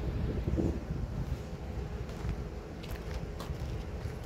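Wind buffeting the phone's microphone: an uneven low rumble, with a few faint clicks in the second half.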